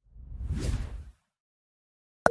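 Deep whoosh sound effect of a TV channel's animated logo outro, swelling and then fading away in just over a second.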